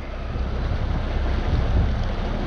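Wind buffeting the microphone over the steady run of a boat's outboard motor and the rush of water from the wake, as a bass boat moves across the lake.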